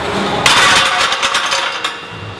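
Steel barbell with plates clanking into the rack's hooks, a loud metallic rattle and clatter that starts about half a second in and dies away over a second or so.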